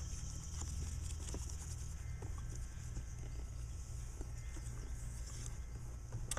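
Faint scattered taps and rubbing over a steady low hum and hiss: gloved hands pressing and smoothing a plastic-film-covered reinforcement mesh patch onto a plastic bumper cover.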